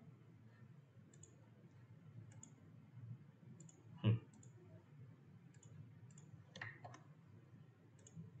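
Faint computer mouse clicks, several small sharp clicks spaced a second or so apart, over a low steady hum. About four seconds in there is one louder, duller thump.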